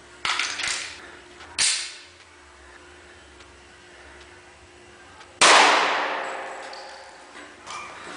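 A single .40 S&W gunshot about five seconds in, sudden and loud, with a long echoing tail that fades over about two seconds. Two shorter, fainter sharp reports come in the first two seconds.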